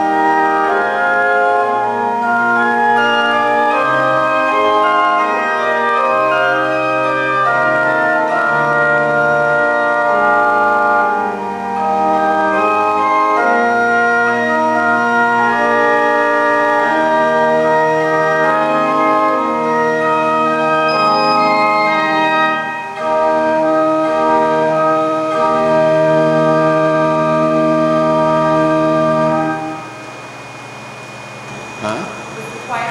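Church pipe organ being played: sustained chords whose held notes change steadily, with two short breaks between phrases about 11 and 23 seconds in.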